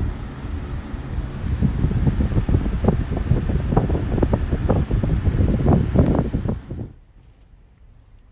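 Low rumble with rapid, irregular crackling, like rustling against the microphone, that cuts off suddenly about seven seconds in.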